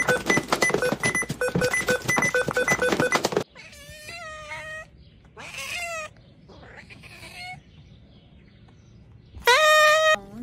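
Music with a repeating pattern of notes cuts off about three seconds in. A tabby-and-white cat then meows three times, each call drawn out and wavering in pitch. A short, loud, high call comes near the end.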